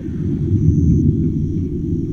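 A loud, deep rumble with a faint high tone that comes and goes.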